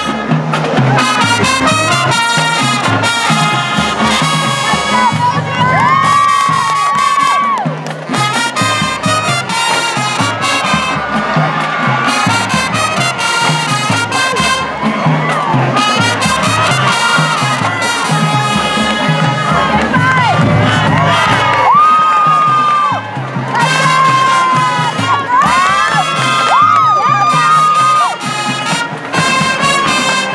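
High school marching band playing, led by trumpets and trombones. Crowd cheering and shouts rise over the band around six seconds in and again from about twenty seconds in.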